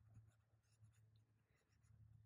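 Near silence, with faint scratching of a brush-pen tip on paper.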